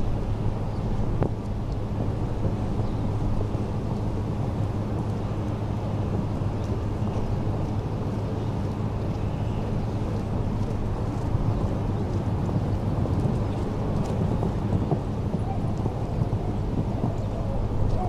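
Steady low rumble of wind buffeting the camera microphone, over the background noise of an outdoor show-jumping arena, with a faint voice now and then.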